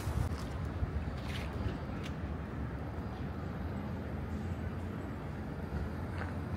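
Steady low rumble of outdoor city ambience: distant traffic, with wind buffeting the microphone. A few faint ticks come in the first couple of seconds.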